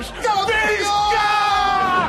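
A man's long, high-pitched yell of triumph, held for over a second and falling slightly in pitch.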